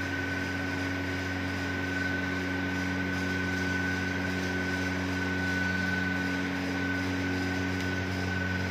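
A steady machine hum with a thin high whine over an even hiss, unchanging throughout.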